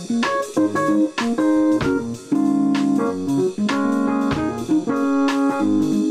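Electronic keyboard played live: held chords with short melodic phrases, the notes changing about every half second to second.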